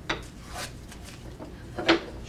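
Small cherry wood box pieces handled and slid on a wooden workbench: a few soft rubs and light knocks.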